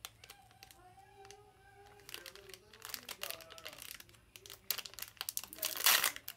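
Foil Pokémon booster pack wrapper crinkling as it is handled and opened by hand: irregular crackles, loudest and densest near the end.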